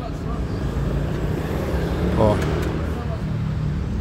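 Steady low hum of a vehicle engine running in the background, with a single spoken word about two seconds in.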